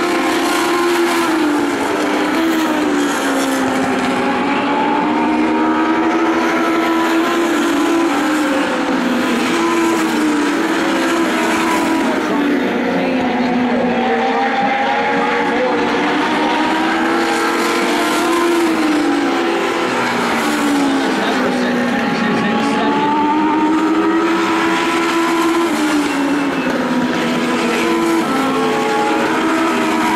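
Several Legend race cars' 1,200 cc Yamaha motorcycle engines running hard around the oval. Their pitch rises and falls in long sweeps as they accelerate on the straights and lift for the turns.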